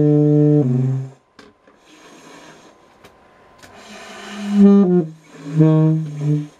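Low notes on a single-reed woodwind, improvised live. A held note steps down in pitch and stops about a second in. After a quiet stretch of hiss, a note slides downward and a last low note is held near the end.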